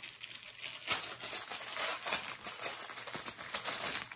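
Thin plastic bag crinkling and rustling as a fabric carry pouch is taken out of it, with a sharper crackle about a second in.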